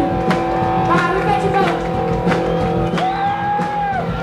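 Live rock band playing: held notes that bend in pitch over regularly struck drums.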